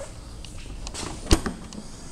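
The boot lid of a 2001 Mercedes-Benz S320 being unlatched. The latch gives one sharp click about two-thirds of the way in, with a few fainter clicks around it.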